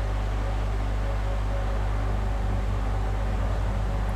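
Steady low hum with a faint even hiss: background room noise.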